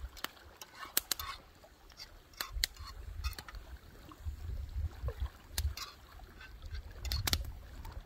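Sharp, irregular clicks and crackles from a small split-wood cooking fire and a utensil working in a grill pan of asparagus, over a low wind rumble on the microphone.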